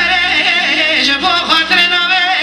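Man singing a Kurdish song live into a microphone, his voice wavering through ornamented runs over steady instrumental backing.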